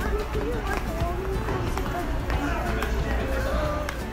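Indistinct voices of people in a busy store over a steady low rumble, with a few light clicks and knocks scattered through.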